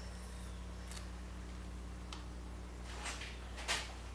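Steady low electrical hum with a few faint clicks and rustles from hands handling a vinyl Roman-numeral decal on its transfer tape. The last of these, just before the end, is the loudest.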